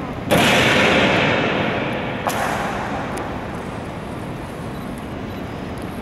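A ceremonial honor guard's drill strike: one loud, sharp crack about a third of a second in, echoing for about two seconds through a large marble hall, then a lighter click about two seconds later.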